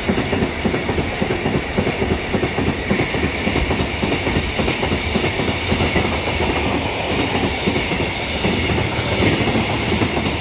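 A freight train of open gondola wagons rolling past close by: a steady, loud rolling noise of steel wheels on rail, thick with rapid wheel clatter, and a faint steady ring higher up.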